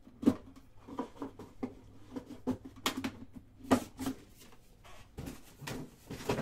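Cardboard trading-card boxes being handled and set down on a table: a string of light knocks and scuffs, with sharper knocks about a third of a second in and twice around the three-to-four-second mark.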